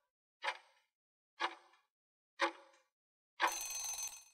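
Countdown timer sound effect ticking three times, a second apart, then a short ringing chime near the end as the count reaches zero.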